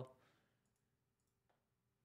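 Near silence: room tone, with a single faint click about one and a half seconds in.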